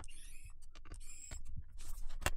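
A small cordless electric screwdriver whirring in short bursts as it backs out the screws of a MacBook Air's aluminium bottom cover, with scattered clicks as the screws and cover are handled.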